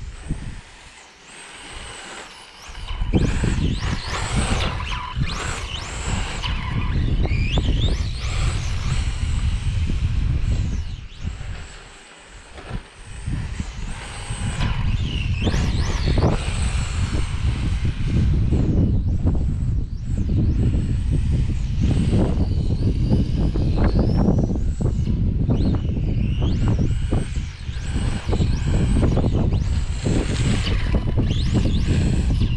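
Brushless 3500 kV motor of a Team Associated Apex2 Hoonitruck RC car on 2S, whining up and down in pitch as the car accelerates and slows, with tyre noise on asphalt. Wind rumbles on the microphone. The sound drops away briefly about a second in and again around twelve seconds.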